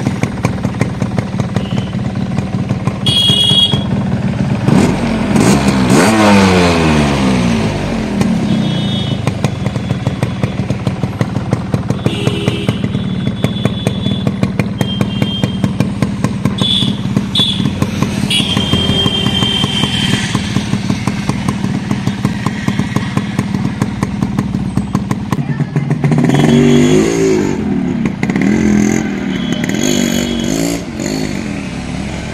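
Yamaha RX115's two-stroke single-cylinder engine idling with a rapid, steady beat. About five seconds in it is revved once and drops back to idle. Near the end the motorcycle pulls away, the engine note rising as it accelerates.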